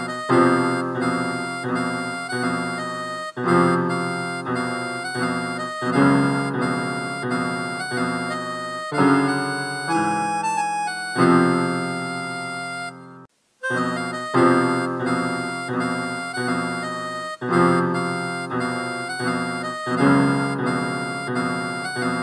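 Harmonica playing a melody over repeated chords on an electronic keyboard. The music cuts out suddenly for a moment a little past halfway, then resumes.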